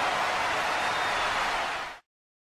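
Steady, even hiss-like noise with no rhythm or pitch, like a background noise bed, that fades out near the end and then cuts to silence.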